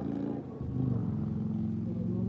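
A vehicle engine idling steadily, a low even hum.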